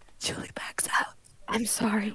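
Only speech: whispering, then a voice saying "I'm sorry" near the end.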